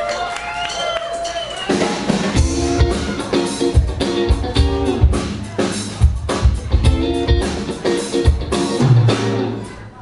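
Live rock band coming in about two seconds in: electric guitars playing chords over a steady drum-kit beat and bass.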